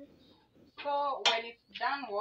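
A woman speaking a few short words, with quiet pauses around them.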